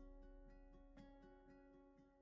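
Soft instrumental background music of plucked-string notes, each struck and left to fade.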